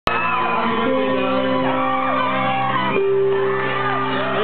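Live post-hardcore band playing, with a singer shouting over held guitar chords.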